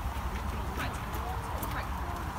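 Faint, indistinct voices of people in the background over a steady low rumble, with a few light clicks.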